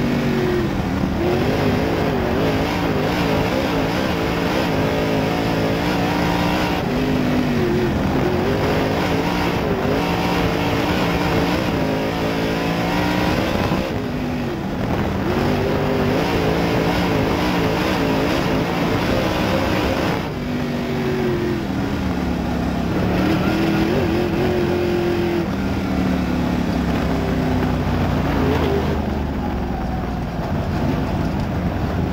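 Limited late model dirt race car's V8 engine heard from inside the cockpit at racing speed, its pitch rising and falling again and again as the driver accelerates and lifts.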